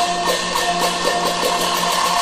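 Teochew opera orchestra playing an instrumental passage: quickly repeated plucked-string notes over a held low note, with light, regular percussion clicks.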